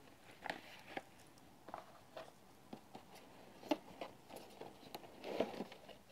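Faint packaging handling: scattered light taps, clicks and rustles as cardboard lids are lifted off a box insert and a folded drone is drawn out of its plastic tray, with a slightly louder cluster near the end.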